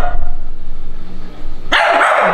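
A small dog barking: a sharp bark near the end, with the tail of another bark at the very start.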